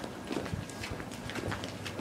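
Footsteps of several people walking on a cobblestone street: a quick, irregular run of hard clicks, several a second.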